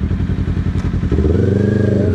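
Kawasaki Ninja sportbike engine idling steadily. About a second in, the engine note swells up and falls back once, like a brief blip of the throttle.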